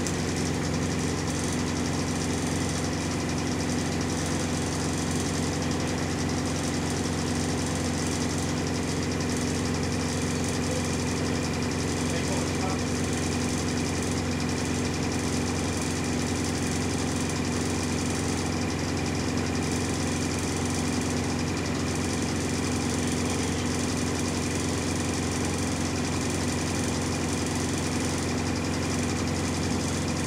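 Single-deck bus's diesel engine idling steadily, heard from inside the passenger saloon, with the body and fittings rattling along with it.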